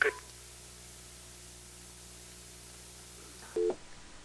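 Faint steady hum of an open telephone line carried through a TV call-in broadcast. There is a very short tonal blip about three and a half seconds in.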